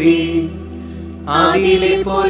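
Voices reciting a Malayalam prayer in a level, chant-like tone over a steady background music drone.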